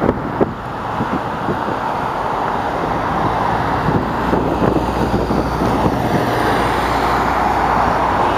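Road traffic noise: a steady hiss of passing vehicles that slowly grows louder, with a low engine hum coming in a few seconds in.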